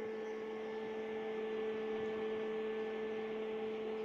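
Steady electrical hum, two constant tones an octave apart over a faint hiss, unchanging throughout.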